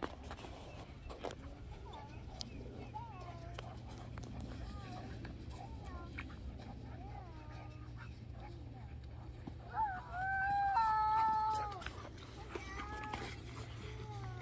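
A toddler babbling in short high sounds, then one long high-pitched squeal about ten seconds in, followed by a few shorter squeals.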